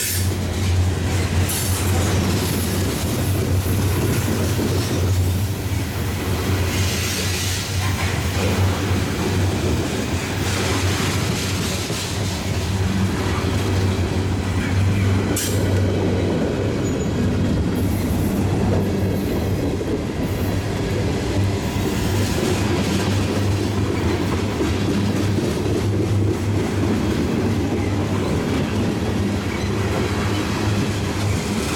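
Freight cars (covered hoppers, then tank cars) rolling steadily past on steel wheels: a continuous loud rumble and rattle of wheels on the rail.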